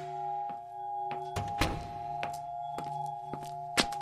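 Sound-design drone of several steady held tones with a series of thunks and knocks over it, about two a second, the heaviest about a second and a half in and a sharp click near the end.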